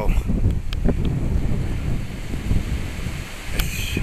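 Strong gusty wind buffeting the microphone: a loud, uneven low rumble that swells and eases with the gusts.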